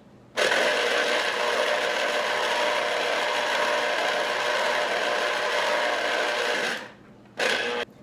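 Electric citrus juicer running as a lime half is pressed down onto its spinning reamer: a steady motor whir for about six seconds, then a second short burst near the end.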